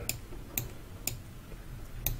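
Light clicks from computer controls being worked to pan an on-screen image, about three clicks roughly half a second apart.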